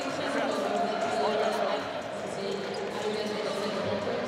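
Basketball arena ambience: a steady wash of crowd chatter and hall noise, with indistinct voices.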